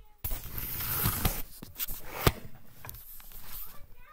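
Handling noise from the camera being picked up and moved: a sudden burst of rubbing and rustling on the microphone, with a few knocks, the loudest about two seconds in.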